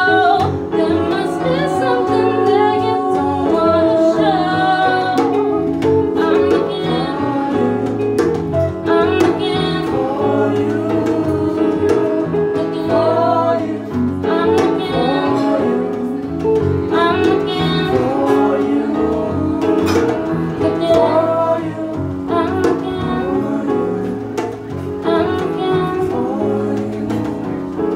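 Live band playing a song: a woman singing lead over electric guitar, electric bass and a hand drum keeping a steady beat.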